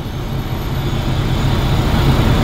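Semi-truck diesel engine idling, a steady low rumble heard from inside the cab.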